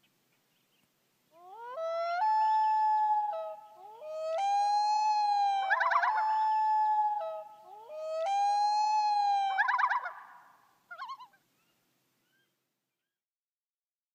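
Common loon calling: three long wailing calls, each sliding up into held notes that step between two pitches and break into a quavering burst near the end, with a short faint call a little after.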